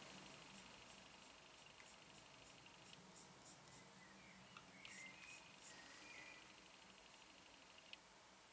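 Near silence: room tone, with a few faint ticks near the middle.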